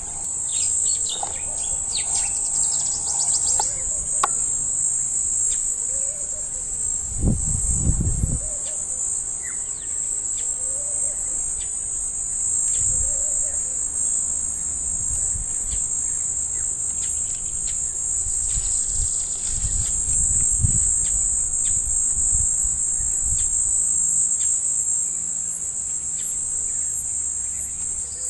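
A steady, high-pitched chorus of insects chirping, with a few low thumps on the microphone.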